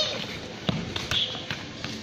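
A soccer ball being kicked on tiled paving: one sharp thud less than a second in, followed by a few lighter taps.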